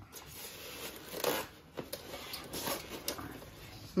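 A sewing machine being pulled out of its white polystyrene foam packing: foam and plastic scraping and rustling in several uneven bursts, loudest about a second in.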